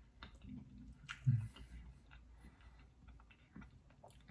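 A person chewing a mouthful of chocolate chip cookie with soft, scattered mouth clicks, and a short closed-mouth "mm" hum about a second in.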